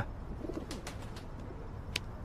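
Pigeons cooing faintly, with a few soft clicks about a second in and a sharp click near the end.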